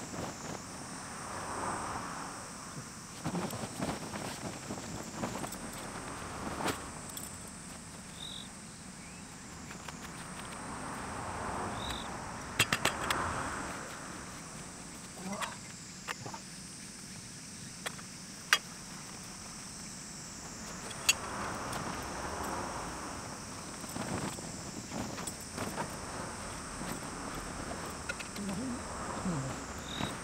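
Heavy polycotton tent canvas rustling and shifting in slow swells as someone moves about underneath it, with scattered clicks and knocks. A steady high insect drone runs underneath.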